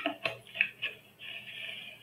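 A few quick sharp clicks in the first second, then a short scratchy rustle: small objects being handled at a desk.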